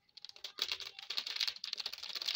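A plastic sachet of chilli powder crinkling as it is shaken and squeezed between the fingers to sprinkle the powder out: a rapid run of small crackles that starts just after the beginning.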